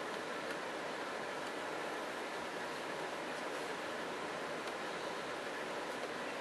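Steady background hiss with a few faint soft clicks and rustles from small puppies mouthing and nosing plush toys on a cushion.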